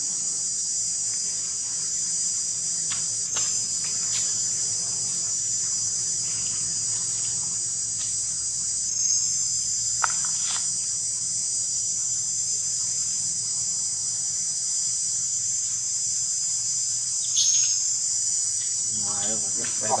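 Steady high-pitched chorus of insects buzzing without a break, with a single click about halfway through.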